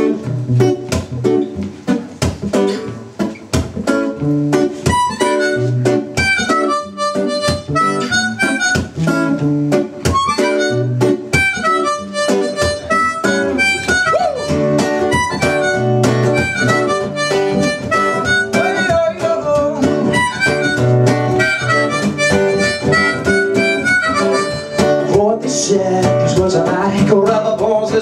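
Acoustic guitar strumming with a harmonica playing the melody over it, an instrumental song intro with no singing.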